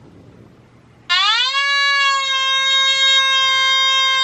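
A Nokta Makro Anfibio Multi metal detector in non-motion Cache mode sounds a continuous target tone while a target sits under the coil. The tone starts about a second in with a short upward glide in pitch, then holds one steady pitch.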